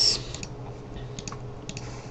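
A few light, scattered clicks of computer input (mouse and keys) while a menu selection is made, over a low steady hum.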